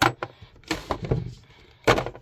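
Several short clicks and knocks of hard plastic being handled: a diagnostic scan tablet and its cable connectors bumping against a moulded plastic carrying case, the sharpest knocks at the very start and just before the end.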